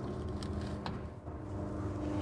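A faint click as the long hinged door of a camper van's side compartment is swung shut, over a steady low hum.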